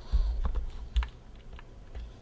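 Close-miked mouth sounds with no voice: a breath that thumps the microphone, then a few sharp wet clicks of lips and tongue, the loudest about a second in.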